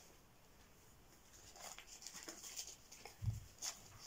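Faint handling sounds of a doll wheelchair being unfolded and turned in the hands: a few scattered small clicks and rustles, with a soft low thump a little after three seconds in.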